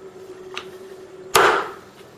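Meat cleaver chopping through smoked pork neck bone onto a wooden cutting board: a light tap about half a second in, then one hard chop near the end with a short ring after it.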